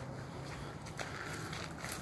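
Quiet footsteps of a person walking at a brisk pace, with faint steady background noise.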